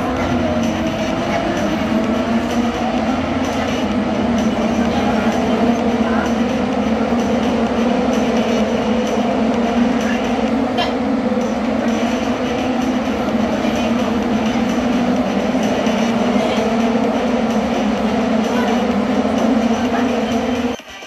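Open-wheel IndyCar race cars running on a street circuit, their twin-turbo V6 engines merging into one steady, slightly wavering drone.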